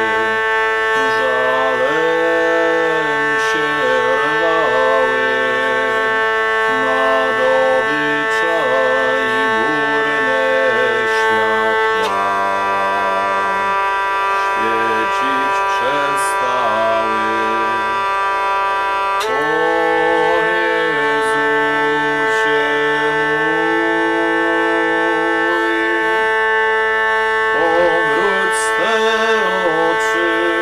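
Hurdy-gurdy played with a cranked wheel: a continuous buzzing drone under a moving melody line. About 12 seconds in, the drone changes for several seconds, then returns to its first pitch.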